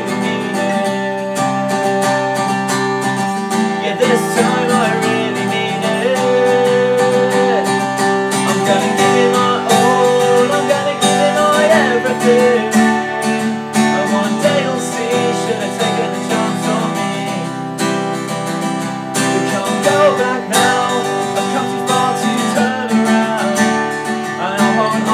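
Acoustic guitar strumming chords at a steady rhythm in an instrumental passage of an acoustic punk-pop song.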